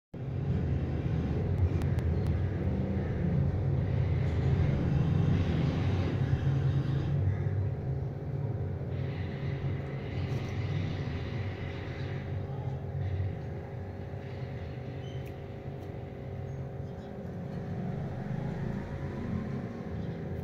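Steady low mechanical rumble with a constant hum, strongest over the first half and easing somewhat later.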